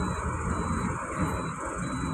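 A truck's engine idling steadily, heard from inside the cab as a low rumble. A faint short high beep repeats about twice a second.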